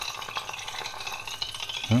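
Motorized stirrer running steadily in a glass vessel of menthol crystals and spirit, a continuous whir with a thin high tone.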